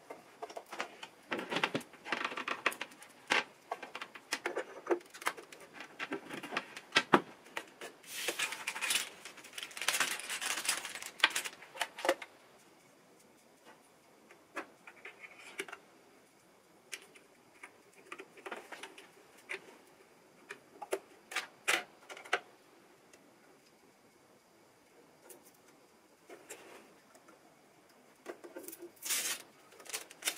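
Handling noises while setting up a sewing machine: the power cord and foot pedal rattling and knocking as they are untangled and plugged in, and small plastic clicks as the thread spool is fitted. Busy clicking and rustling for the first dozen seconds or so, then only scattered clicks.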